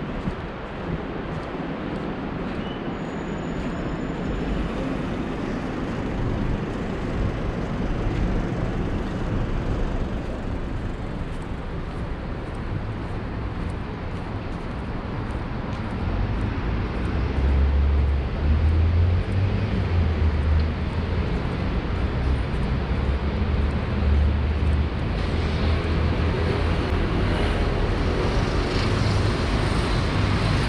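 Steady street traffic noise from passing cars, joined about halfway through by a louder, deeper engine rumble that holds to the end.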